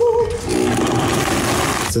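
High-powered blender crushing ice and liqueurs into a frozen slush, its motor starting about half a second in and cutting off suddenly near the end.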